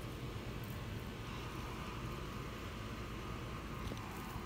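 Faint steady background noise: a low hum under a light hiss, with no distinct sounds.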